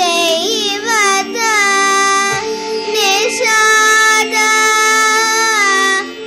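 A young girl singing a Carnatic song in long, bending, ornamented notes over the steady drone of a tanpura.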